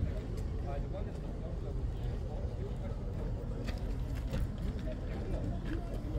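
Indistinct voices of people talking in the background over a steady low rumble.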